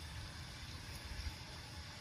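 Steady low rumble and even hiss of outdoor background noise, with no distinct event.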